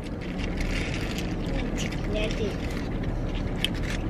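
Steady hum inside a car's cabin, with a few faint clicks and a brief quiet voice about two seconds in.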